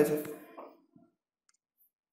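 A man's narrating voice finishing a word, fading out within the first half second, then dead silence.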